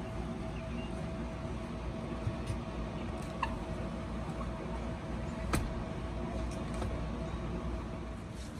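Steady low background rumble with a faint steady hum, broken by a few small clicks, the sharpest a little past halfway.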